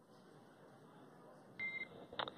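Faint hiss, then about one and a half seconds in a short high beep as a radio communications channel keys open, followed by a burst of radio static.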